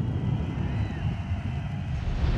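A deep, steady low rumble, like a cinematic drone under a film intro, with no music or singing yet.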